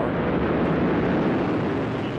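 Atlas V rocket engines firing at full thrust during liftoff: a steady, loud rushing noise, heaviest in the low and middle range.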